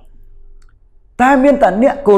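A quiet pause of about a second, then a man's voice starts speaking again.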